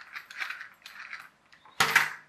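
Small plastic clicks and rattles from a toy RC car being handled, then one much louder sharp plastic clatter near the end as the car is set down on the table.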